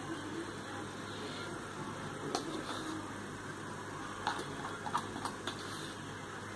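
Quiet room tone: a steady low background noise, with a few faint clicks about two and a half, four and five seconds in.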